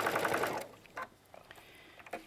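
Sewing machine running fast as it free-motion stipple-quilts, a rapid even chatter of stitches that stops about half a second in. A single click follows about a second in.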